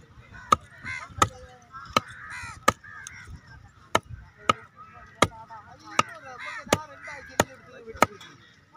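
A heavy cleaver chopping paarai (trevally) into pieces on a wooden log chopping block: about ten sharp strikes, roughly one every 0.7 seconds.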